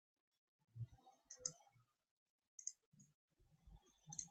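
Near silence with a few faint, short clicks scattered through it.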